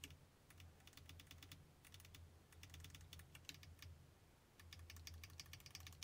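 Faint computer keyboard keystrokes in three quick runs, over a low steady hum.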